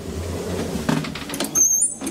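Elevator doors opening at a landing, with a hand-pushed swing door: a low rumble and several clicks of the door hardware, then a brief high squeak near the end.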